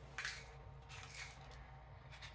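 A few faint light clicks and rustles of trading cards being handled and gathered up.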